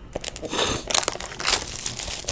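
A Panini Infinity football card box being handled and opened: a papery rustling and crinkling of cardboard and wrapping, with a few small clicks.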